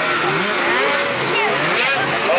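Racing snowmobile engines revving, several overlapping, their pitch rising and falling as the sleds accelerate and back off over the track.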